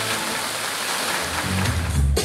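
Fountain water jets spraying and splashing into the pool, a steady rushing noise; a low bass beat of music comes in about a second and a half in.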